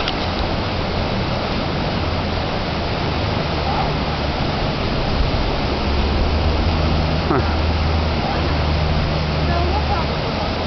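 Steady rushing of flowing water, with a low rumble underneath that grows stronger about halfway through.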